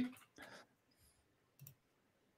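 Near silence with a few faint clicks, just after a voice trails off at the start.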